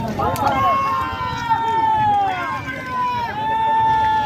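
Men's voices in long, drawn-out, high-pitched calls, with held notes that slide slowly down in pitch. Several overlap near the start, and another long call comes in the second half.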